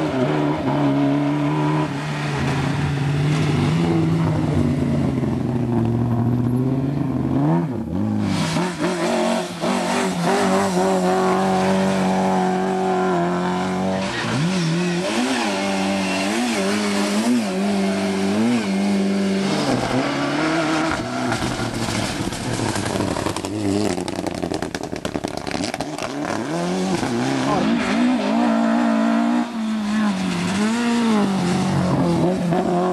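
Lada saloon rally cars driven hard at speed, one after another. Their engines rev high, and the pitch climbs and drops over and over in the middle part as the drivers work through the gears and lift off for bends.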